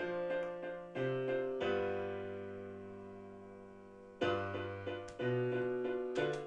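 Sampled piano from the HALion One software instrument's Rock Piano program, playing back a MIDI piano part in chords. A few short chords are followed by one chord held for about two and a half seconds and slowly dying away, and then more chords start about four seconds in.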